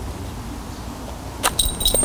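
Low wind rumble on the microphone, then, about one and a half seconds in, a short run of small metallic clinks and jingles from the dog's collar and lead clip as the muzzled dog takes a treat.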